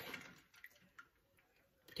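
Near silence, with two faint clicks, about half a second and a second in, of a metal spoon touching ice and a stainless bowl as a boiled egg is lifted out of ice water.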